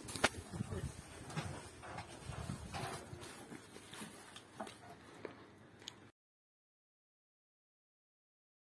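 Faint outdoor café terrace ambience: distant voices with small scattered knocks and clicks, cutting off abruptly to silence about six seconds in.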